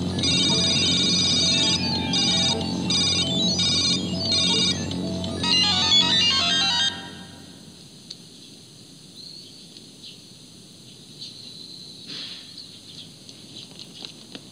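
Electronic synthesizer music of quick, high, beeping notes over a steady low drone, stopping about seven seconds in. The rest is quiet, with only faint background noise.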